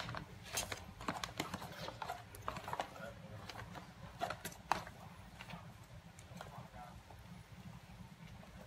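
Plastic spoon tapping and scraping against a stainless steel mixing bowl as coleslaw is scooped out and dropped onto a sandwich: scattered light clicks, busiest in the first five seconds and thinning out after.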